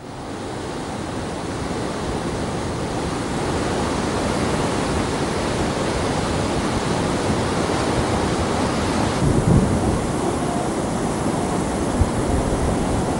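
Rushing floodwater of the swollen Kaveri river, high from dam releases, pouring over and around a partially submerged bridge: a loud, steady rush of water. It swells briefly lower and louder about nine and a half seconds in.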